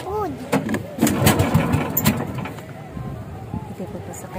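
The engine of a bangka outrigger boat starting up, a louder rumbling stretch with a few clicks beginning about a second in, with voices around it.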